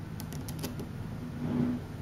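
Several faint, quick clicks of small neodymium magnet spheres snapping together as a pentagon-ring piece is pressed onto a magnet-sphere frame.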